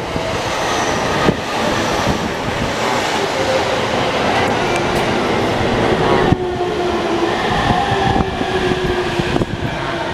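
E231 series electric train running past: steady wheel-on-rail noise with the whine of its traction motors. After a sudden break about six seconds in, the train is coming into a station, its motor whine now clearer as steady tones that slowly fall in pitch as it slows to stop.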